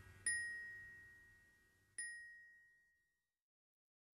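Two high bell-like notes of the same pitch, struck a little under two seconds apart, each ringing and fading away as the song's last notes die out.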